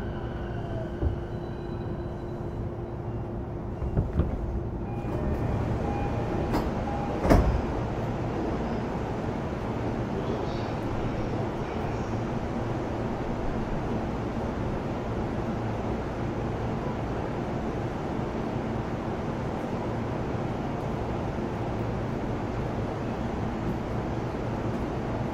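Interior running noise of a JR East E233-0 series electric commuter train: a steady rumble of wheels on rail. Faint steady tones fade out about five seconds in, and a couple of sharp knocks follow, the loudest about seven seconds in.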